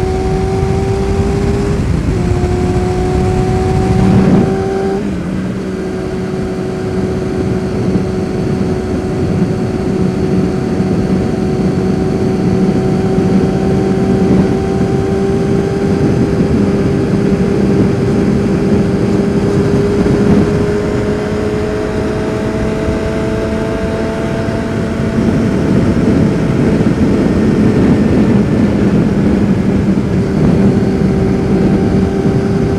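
Yamaha FZR600R's inline-four engine running hard on the road, heard under heavy wind noise on the helmet microphone. The engine note climbs, dips twice in quick succession within the first five seconds as it shifts up, then rises slowly and steadily in one gear.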